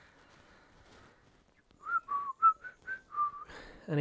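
A person whistling a short run of about seven quick notes, hopping up and down in pitch, starting about two seconds in.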